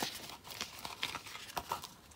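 Paper card stock rustling, with a few soft clicks, as a folded pop-up card is closed and opened again by hand.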